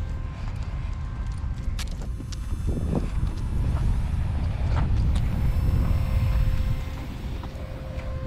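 Low rumbling outdoor noise that swells a few seconds in and eases near the end, with a couple of faint clicks.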